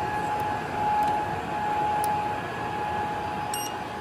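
Steady whir of the running HPE BladeSystem c7000 blade enclosure's cooling fans, with a thin steady whine at one pitch over the rush of air. There is a single faint click about halfway through.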